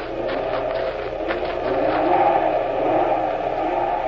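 Radio-drama wind sound effect: a steady blowing whine whose pitch wavers, rising and falling in the middle.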